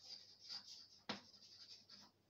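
Chalk writing on a blackboard: faint, high scratching strokes, with one sharp tap of the chalk on the board about a second in.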